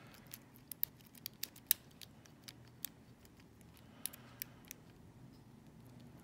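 A lock pick working the pin tumblers of a Gerda euro cylinder held under light tension: faint, irregular metallic clicks and ticks, the sharpest a little under two seconds in.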